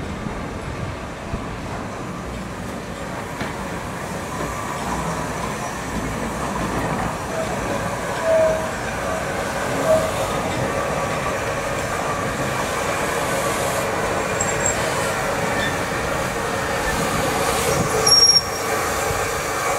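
Midland 4F 0-6-0 steam locomotive moving slowly past at close range, its rumble growing steadily louder, with two short wheel squeals about eight and ten seconds in.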